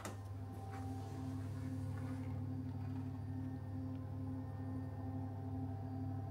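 Steady low hum of a washing machine's motor running, a drone of several held tones.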